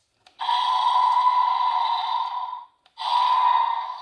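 Electronic roar sound effect from the Mattel Slash 'N Battle Scorpios rex toy's small built-in speaker, played twice. The first roar lasts about two seconds; the second starts about three seconds in and trails off.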